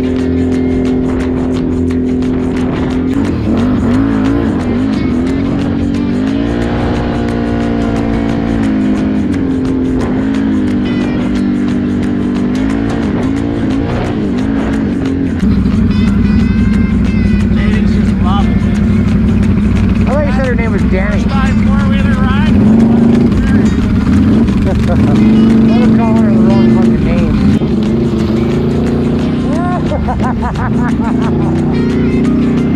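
Background music with a singing voice, changing to a louder passage about halfway through.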